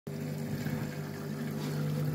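Candy EcoMix front-loading washing machine running a wash cycle, its drum turning the laundry with a steady motor hum.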